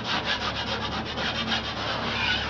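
Steel broad knife scraping over a plasterboard patch and dried joint compound in quick, rapid strokes, knocking off loose or rough spots before the top coat goes on.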